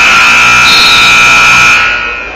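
Gymnasium scoreboard horn sounding one steady, loud blast of about two seconds that cuts off near the end. It marks the end of a period, with the backboard's red edge lights lit.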